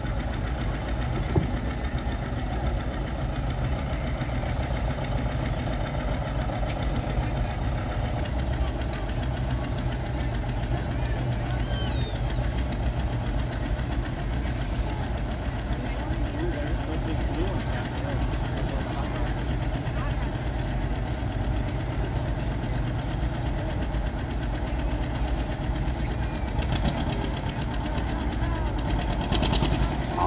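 Tractor diesel engine idling steadily, a low even rumble that holds without revving throughout.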